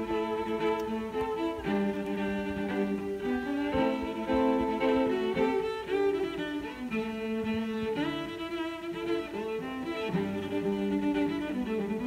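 Background music of bowed string instruments, cello and violin, playing a melody of held notes.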